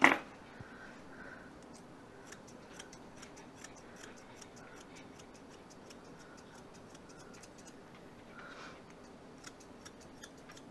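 Grooming scissors snipping a dog's tail hair: a quick run of small, crisp metallic clicks, about three a second, as the blades close.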